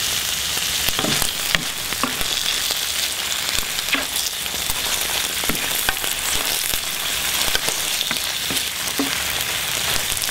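Fly agaric mushroom pieces sizzling in ghee in a very hot cast-iron grill pan, a steady hiss with scattered crackles, stirred with a wooden spoon in the second half.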